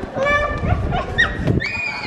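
A small child's high-pitched voice making short squeals and sung notes that slide up and down in pitch, over low knocking and bumping.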